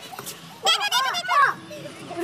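Young voices shouting excitedly in a high-pitched burst of about a second, in the middle of the stretch.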